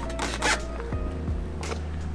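Background music, with a couple of short scraping rustles as a bicycle is pushed into a pickup bed, its rear tire rubbing against the tonneau cover.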